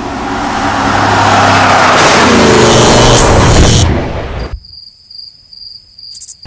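A motor vehicle passing by at speed: the sound swells over the first two seconds, the engine note drops in pitch as it goes past, and it cuts off suddenly about four and a half seconds in, leaving a faint steady high tone.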